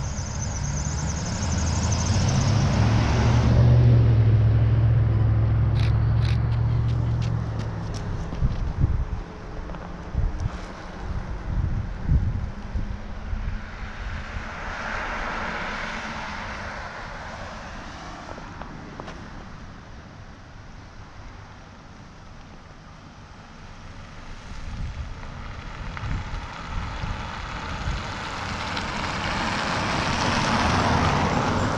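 Vehicles passing on a road: a pickup truck goes by with a low engine rumble that builds to its loudest about four seconds in and fades by about eight seconds. Another car's tyres hiss past about midway, and an SUV approaches near the end.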